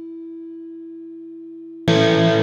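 A single steady electronic tone, held alone and slowly fading after the music drops out. Near the end, loud music with distorted electric guitar cuts back in suddenly.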